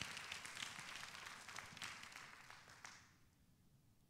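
Congregation applauding faintly, the clapping dying away about three seconds in.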